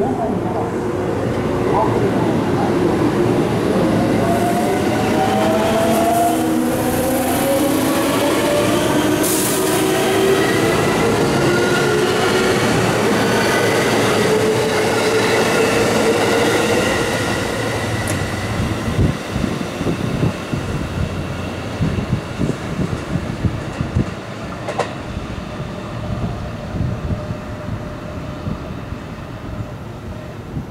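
A JR West local electric commuter train pulling out and accelerating. Its inverter-driven motors whine in several tones that climb steadily in pitch for about fifteen seconds. Then the wheels click over the rail joints, fading as the train moves off.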